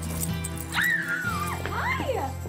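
Excited high-pitched squeals from a teenage girl: one long falling squeal about a second in and a shorter rising-and-falling one near the end, over steady background music. At the start the plastic beads of a bead curtain click as it is pushed aside.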